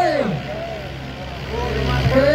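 Diesel tractor engines running under heavy load in a steady low drone, with a man's long drawn-out shout falling away at the start and another rising near the end.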